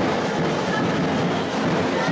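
Carnival street percussion band of bass and snare drums playing, loud and dense.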